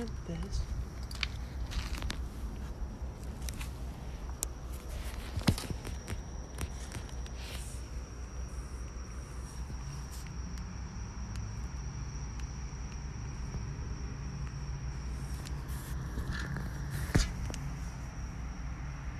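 Cardboard boxes and trash shifting and knocking as someone climbs around inside a roll-off dumpster, with two sharp knocks, one about five seconds in and one near the end, over a steady low hum.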